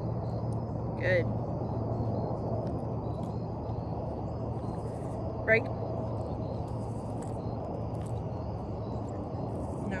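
Steady low outdoor background rumble with a faint steady hum. There is a short sharp call about a second in, and a brief spoken word about five and a half seconds in, which is the loudest moment.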